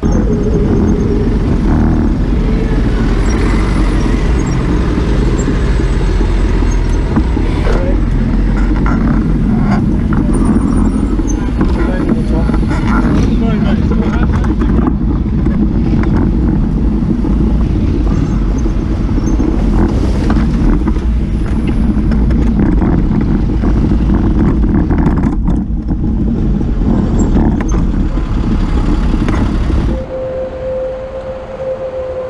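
Road traffic on a busy city street heard from a moving bicycle, under a loud, steady low rumble of wind on the bike-mounted camera's microphone, with scattered short knocks and rattles.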